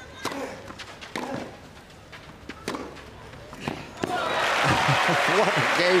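Tennis ball struck back and forth by rackets on a clay court, several sharp hits about a second apart, then the crowd erupts in loud cheering and applause with shouts about four seconds in as the point ends.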